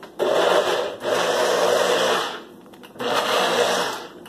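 A NutriBullet personal blender runs in three short pulses, the middle one the longest, blending banana pieces into pancake batter.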